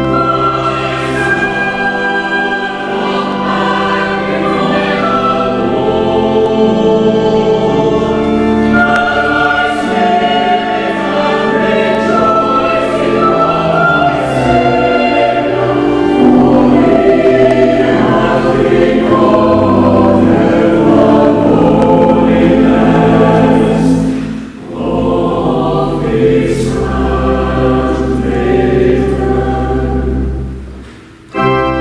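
Church choir singing with organ accompaniment, many voices in sustained harmony. The voices break off briefly about 24 seconds in, then sing on.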